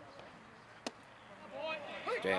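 A single sharp pop a little under a second in, a baseball smacking into a leather glove, over faint distant chatter; a man's voice starts up near the end.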